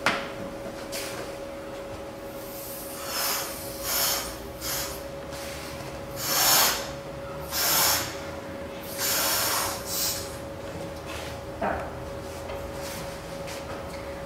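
A person blowing up a latex balloon by mouth: a series of about eight breathy puffs, each under a second long, with short pauses for breath between them. A faint steady hum runs underneath.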